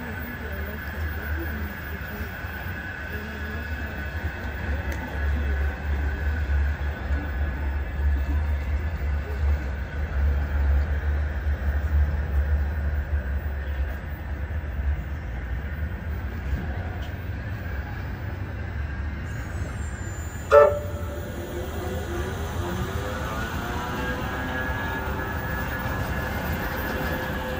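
Bombardier Flexity M5000 tram running past on street track with a low rumble and a steady whine. About three-quarters of the way in there is a short, sharp, loud sound. After it the traction motors' whine rises in pitch as the tram gathers speed.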